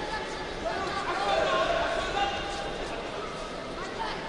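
Several voices calling out over a steady background of crowd noise.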